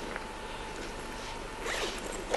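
A short rasp near the end, like a zip being drawn, as things are handled, over a steady faint hiss.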